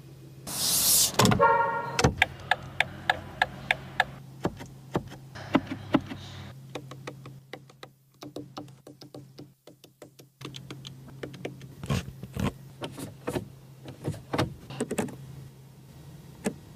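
Sharp clicks of car interior buttons and switches being pressed one after another, over a steady low hum. About a second in there is a loud rushing burst followed by a short pitched tone, and in the middle the sound drops almost to silence for a few seconds.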